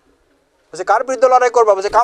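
A man's voice speaking loudly and forcefully, starting about three-quarters of a second in after a short pause.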